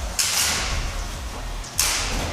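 Two sudden metallic hits from a horizontal spinner weapon striking a combat robot's metal body. The first comes about a quarter second in and trails off over most of a second; the second, sharper one comes near the end, throwing sparks and tearing off a wheel.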